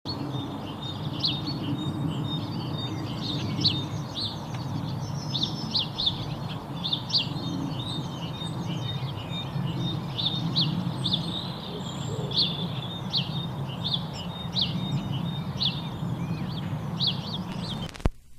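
Birds chirping: short high chirps repeated about once or twice a second, over a steady low rumble.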